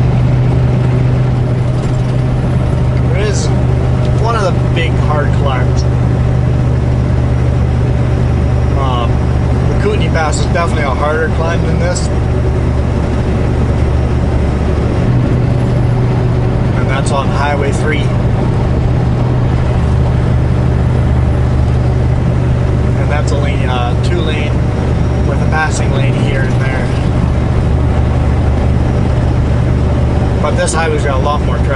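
Semi truck's diesel engine running steadily at highway cruising speed, heard from inside the cab as an even low drone.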